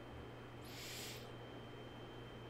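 Steady low electrical hum and faint hiss, with one brief soft hiss lasting just over half a second near the middle.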